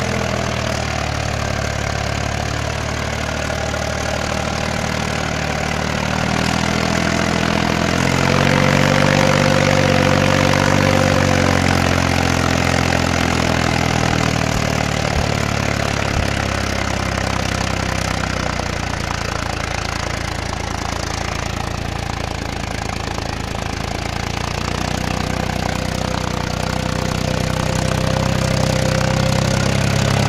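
Mahindra 265 DI tractor's three-cylinder diesel engine running steadily under heavy load, hauling a fully loaded trolley through sand. About a third of the way in the engine gets louder and its pitch shifts, then it settles back to a steady note.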